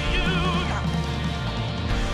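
Live worship band playing a rock-style song: drum kit and steady bass line under a high, wavering melody line.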